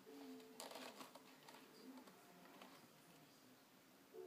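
Near silence: faint room tone with a steady low hum, and one brief soft rustle about half a second in from a cat's fur brushing against foam-resin clogs.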